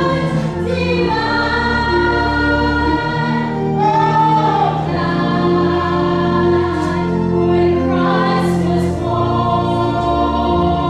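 Two women singing a song through handheld microphones, over an instrumental accompaniment of held low bass notes that change every second or two.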